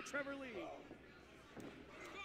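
Quiet wrestling match broadcast audio: a man's voice faintly for the first half second, then one short sharp smack about one and a half seconds in.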